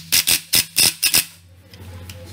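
Cordless impact wrench on the nut at the centre of a Vespa Sprint 125's CVT transmission cover, hammering in a quick string of short trigger blips, about five in the first second and a half, as the nut is run down tight.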